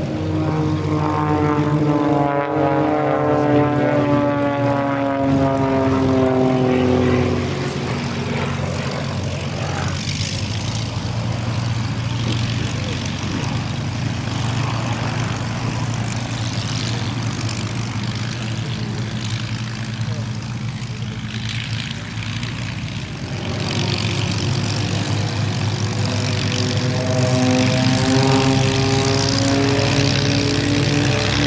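Rolls-Royce Merlin V12 piston engines of taxiing Supermarine Spitfires. The engine note falls in pitch over the first several seconds, settles into a steady lower rumble, and rises again in pitch over the last few seconds.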